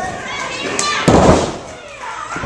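A thud on the wrestling-ring mat about a second in, the loudest moment, with shouting voices from the crowd around it.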